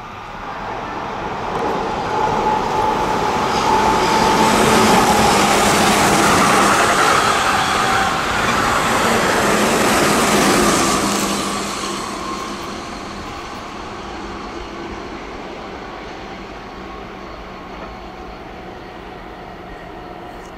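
Keihan 8000 series electric train running through the station at speed without stopping: the noise of its wheels on the rails builds over the first few seconds, is loudest for several seconds as the cars go past, then fades as the train pulls away. A steady tone is heard as it approaches.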